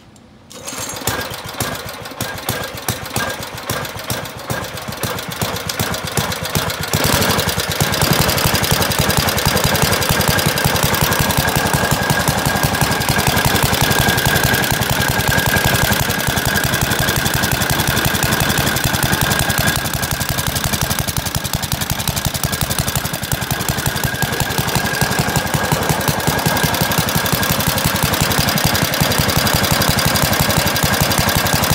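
Vintage Wisconsin air-cooled single-cylinder engine catching about half a second in. It runs unevenly for several seconds, then settles into steady, louder running from about seven seconds in.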